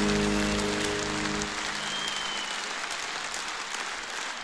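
A live band's final chord ringing on and dying away about a second and a half in, under steady applause from a large concert-hall audience.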